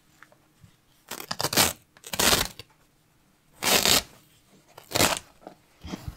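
Woven foundation fabric being pulled off the gripper teeth of a punch needle frame, with four short ripping pulls about a second apart.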